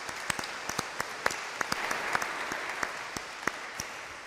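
Congregation applauding: dense clapping that thins out and fades toward the end.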